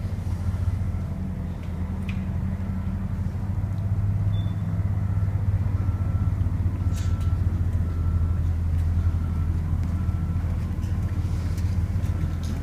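Steady low rumble, like an engine idling, with faint short high-pitched tones recurring about once a second and a few brief clicks.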